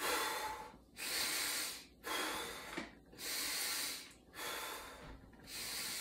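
A man breathing audibly in and out through the mouth, about six breath sounds of roughly a second each with short pauses between them: slow, deep belly (diaphragmatic) breathing, the belly filling on each inhale.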